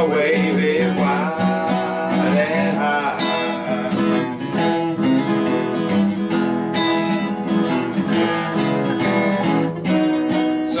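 Several acoustic guitars strumming chords together at a steady tempo in an instrumental passage, with no words sung.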